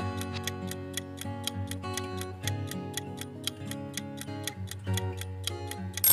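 Quiz countdown-timer sound effect: an even clock-like ticking, about four ticks a second, over quiet background music.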